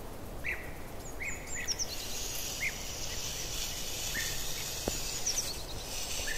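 Small birds chirping throughout, short high chirps and quick falling twitters, over a low steady background. A soft hissing rustle joins in from about a third of the way through until near the end.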